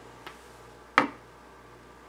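Handling noise from a plastic model building being lifted off a layout: a faint click, then a sharper short knock about a second in.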